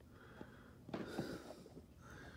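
Faint breathing close to the microphone, about two soft breaths, with a few light clicks.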